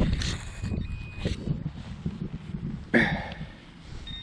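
Small hand digging tool cutting into grassy turf and scraping through soil, in a series of uneven scrapes and soft knocks. A faint steady electronic tone sits under the first second or so.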